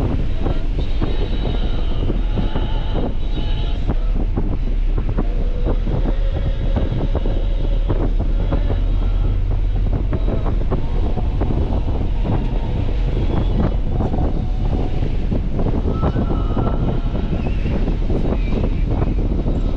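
Nissan 300ZX driving: steady engine and road rumble with irregular bumps, and wind buffeting the microphone.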